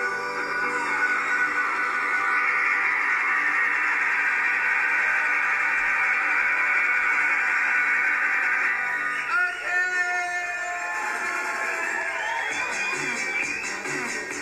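Live band music from a concert stage, heard from within the audience; the dense sound thins and changes about nine seconds in.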